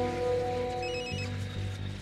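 Mobile phone ringtone: a short burst of rapid, high electronic beeps about a second in, over a sustained, fading background music score.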